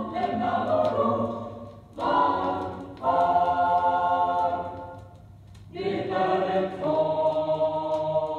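A choir singing held chords from a 1970 LP recording, breaking off briefly about two and three seconds in, fading to a quieter stretch just past the middle and then coming back in.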